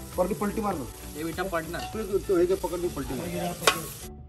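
Chicken pieces sizzling in an aluminium pot over a wood fire, stirred with a metal slotted spoon, with people talking over it. A single sharp clack near the end.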